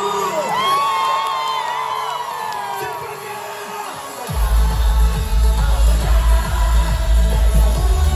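Concert crowd cheering and whooping during a break in the song; about four seconds in, a loud electronic dance beat with heavy bass comes in through the PA.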